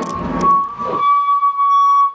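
A steady, loud, high-pitched feedback squeal from the band's amplification, held at one pitch after the music drops out about a second in. A low thump comes near the start.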